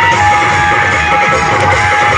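Loud music played through a truck-mounted horn loudspeaker: a melody of long held notes over a quick, steady beat.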